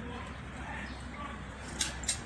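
Faint background of a goat and sheep pen, with a sharp click near the end.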